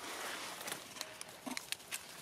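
Dry leaf litter and twigs rustling and crackling under a young macaque moving on the ground, with a quick run of sharp snaps in the second half.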